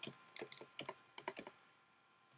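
Faint typing on a computer keyboard: a quick, uneven run of keystroke clicks that stops about a second and a half in.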